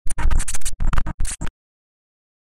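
Glitchy electronic stutter effect for a logo intro: a rapid run of short, choppy bursts with heavy bass, cutting off suddenly about a second and a half in.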